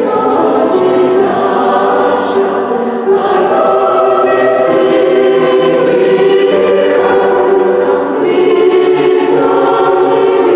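Mixed choir of women's and men's voices singing sustained, full chords in a stone church, with the words' hissing 's' sounds standing out now and then.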